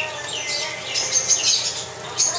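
Brown-throated conure chirping: short, high calls, with a quick run of them in the second half.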